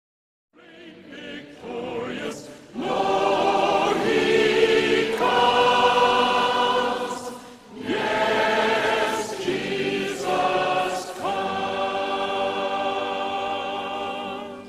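A choir singing long, held chords with vibrato in a few slow phrases, starting after a moment of silence.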